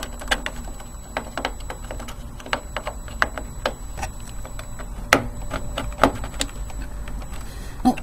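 Irregular plastic clicks and taps of memory modules being pushed into motherboard RAM slots and their retaining clips, with a few louder clicks about five and six seconds in. One module is in the wrong way round and will not seat.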